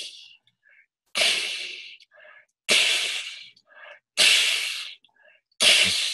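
A man whispering a long breathy 'ee' vowel over and over, about one every second and a half. Each is a hiss of air at the tongue hump held high near the roof of the mouth; it starts loud and fades. Short quiet breaths come between them.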